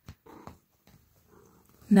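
Domestic cat giving a short, faint trill about half a second in, in reply to being spoken to.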